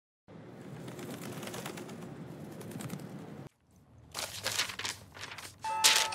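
Newspaper pages being leafed through and rustled, ending in a loud flap of a page being turned. A melodic phone ringtone starts just before the end. The first three seconds hold only a steady background hiss.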